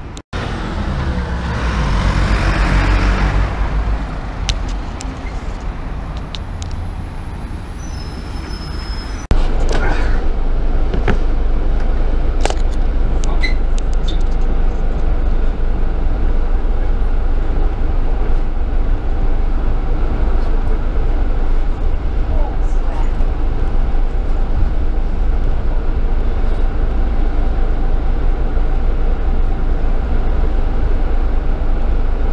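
Engine and road noise inside a moving double-decker bus: a steady low rumble, with a hiss about two to three seconds in, and louder from about nine seconds in.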